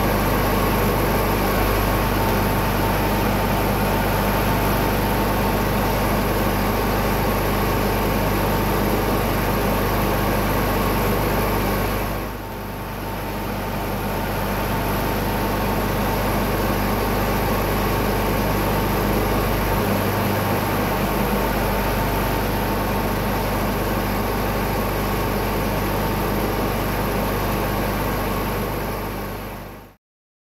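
Freshly rebuilt Kohler K532 two-cylinder cast-iron engine of a John Deere 400 garden tractor running steadily at idle. The sound briefly dips about twelve seconds in and fades out at the end.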